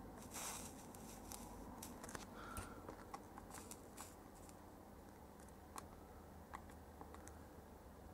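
Very quiet soldering-iron work on a QFN chip's pins: faint, scattered small clicks of the iron tip and solder wire against the pins and board, with a brief soft hiss about half a second in.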